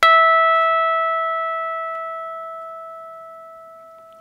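Electric guitar's high E string played as a 12th-fret natural harmonic: one pluck, then a clear bell-like tone an octave above the open string that rings on and slowly fades. Damping the string at the 12th fret removes the fundamental, leaving the first overtone.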